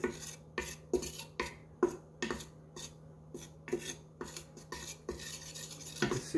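A wooden spatula scraping dry flour around the bottom of a stainless-steel Instant Pot inner pot, in strokes about two a second with a short pause about three seconds in. The flour is being toasted dry as the base of a roux.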